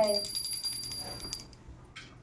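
Small brass puja hand bell rung rapidly and steadily, its ringing stopping about one and a half seconds in.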